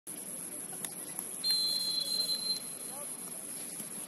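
A referee's whistle blown once in a single steady blast of about a second, over faint distant shouts of players on the pitch.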